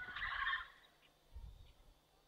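A parrot gives a single harsh squawk lasting about half a second, right at the start.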